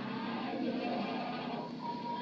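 Quiet, muffled film soundtrack played back from a movie clip: a low steady drone with hiss.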